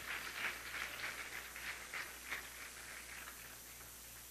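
Faint congregation applause, scattered hand claps dying away to a low hiss by the end.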